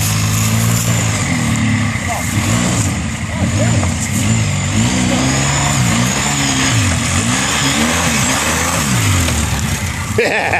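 ATV engine revving up and down again and again under heavy load as the four-wheeler is driven and pushed up a steep, muddy creek bank.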